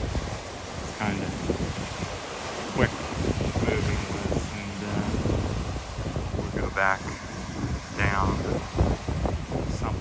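Wind blowing across the microphone over the wash of waves breaking on a rocky shore.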